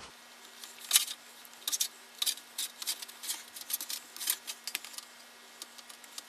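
Sheet metal being folded by hand along an edge: a string of short, sharp metallic ticks and clicks at irregular intervals, over a faint steady hum.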